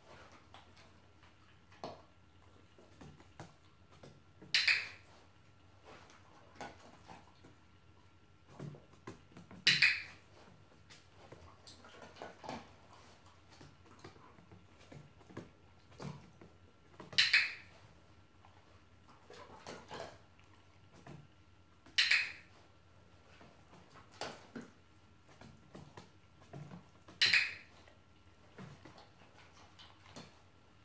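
A dog-training clicker gives five sharp single clicks, roughly every five seconds, each marking the moment the dog gets a step right. Between the clicks there are faint taps and shuffles of the dog's paws and claws on the wooden floor.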